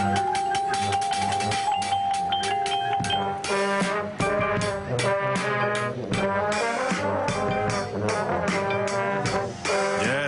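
High school marching band playing: one held brass note for about the first three seconds, then full brass chords over rapid drum hits from the drum kit and percussion.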